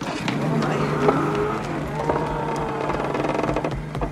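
A boat's engine running with a steady low hum, with faint voices over it.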